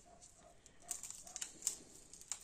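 Faint crackle and a few small clicks of dried cayenne chili pods being broken open by hand and their seeds picked out.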